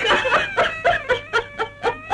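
A woman sobbing in grief, in rapid broken gasps several times a second, over a soft sustained string-music background.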